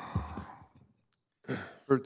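A man sighing into a desk microphone, a breathy exhale that fades out within the first second, followed by a short voiced hesitation just before he resumes speaking.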